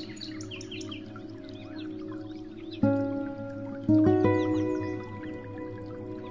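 Calm instrumental background music of sustained, ringing notes, with new chords struck about three seconds in and again a second later, over a steady scatter of bird chirps.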